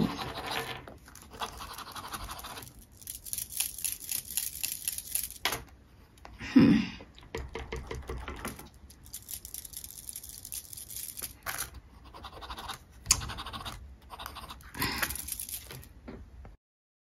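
Steel nib of a Cross Aventura fountain pen scratching over paper in repeated bursts of strokes, dry and putting down no ink.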